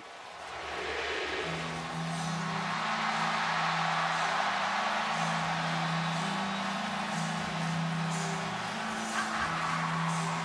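A packed stadium crowd cheering steadily, swelling during the first second, with low held musical notes that shift in pitch every second or two underneath.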